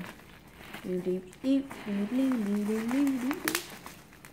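A boy humming a wavering tune to himself for a couple of seconds, ending in a short laugh.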